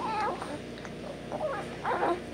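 Young baby cooing: short, squeaky little vocal sounds, one at the start and a couple more near the end.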